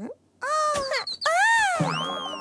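Cartoon sound effects: a short pitched call, then a longer whistle-like glide that rises and falls in pitch.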